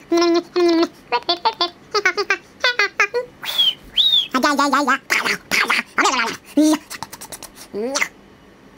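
A man making silly wordless noises with his voice: a string of short warbling, wobbling sounds, two high squeaks a few seconds in, and a quick run of mouth clicks near the end.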